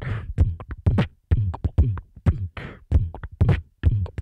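Beatboxing into a microphone: mouth-made kick-drum thumps and snare and hi-hat hisses in a quick, steady rhythm, roughly three to four hits a second.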